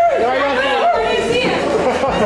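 Overlapping chatter of several people's voices.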